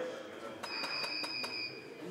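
A camera shutter fires a rapid run of about six clicks lasting about a second, over a steady high-pitched electronic whine.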